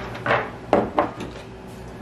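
Glass canning jars and lids being handled on a table: a brief scuff, then two sharp knocks about a third of a second apart.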